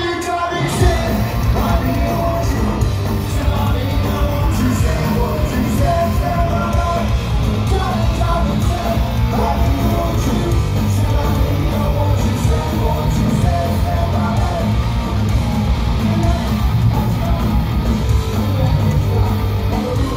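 Punk rock band playing live at full volume in a hall: distorted electric guitars, bass and fast drums crash in together about half a second in and keep going, with shouted vocals over them.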